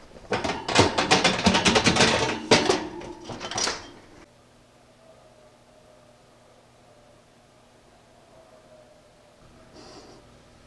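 Metal kitchenware clattering and rattling for about four seconds, a dense run of rapid knocks with a metallic ring, then only a low steady hum.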